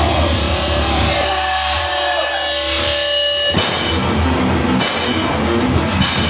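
Live rock band playing loud: a sustained guitar chord rings out, then about three and a half seconds in the drums crash back in with the full band, cymbal crashes landing about once a second.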